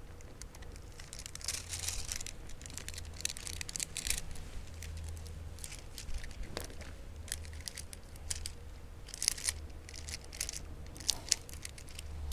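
Nail-art transfer foil crinkling and rustling as it is pressed and rubbed onto a fingernail to transfer a flower design, in irregular crackles with a few sharper ones after about nine seconds.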